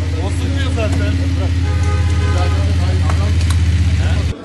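Engine of an armoured police vehicle idling close by: a loud, steady low hum with a fast, even pulse. Faint voices sound over it.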